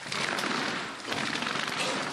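Slatted roller shutter on a fire engine's equipment compartment being rolled up, its slats clattering in a fast, continuous run of clicks.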